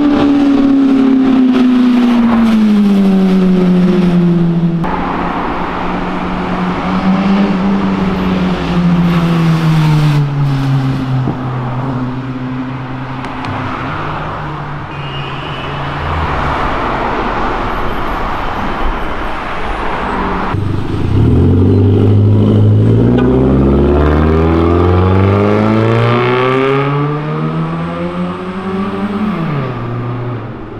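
Car engines passing at speed. One engine's note falls away at the start. Later an engine accelerates hard, its pitch climbing steeply, then drops sharply as it goes by near the end.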